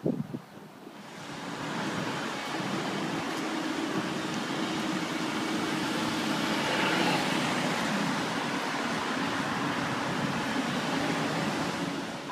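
Road traffic on a city street: a steady rush of passing cars with a low engine hum, coming in about a second in.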